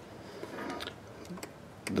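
A few faint, light clicks over quiet background noise.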